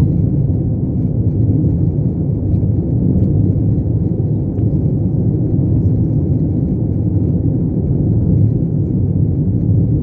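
Steady low rumble of road and engine noise inside the cabin of a vehicle cruising along a highway.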